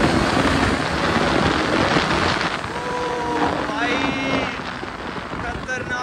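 KTM sport motorcycle's single-cylinder engine under hard acceleration, with heavy wind rush over the microphone. The wind noise is heaviest in the first couple of seconds; after that the engine note comes through and climbs in pitch about four seconds in.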